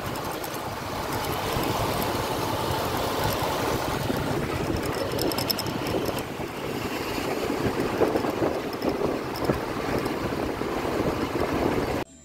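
Steady road noise of riding on a two-wheeler in city traffic: motor scooter engines running under a continuous rush of traffic.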